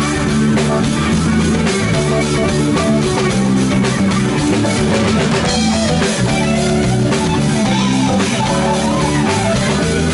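Live blues band playing loud, with electric guitars, bass guitar, keyboard and a drum kit keeping a steady beat.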